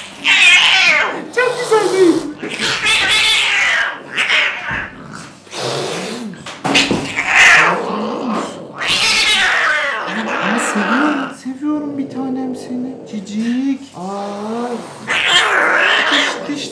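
Agitated domestic cat yowling repeatedly while it is restrained for a veterinary exam, with a long, lower drawn-out call from about ten seconds in.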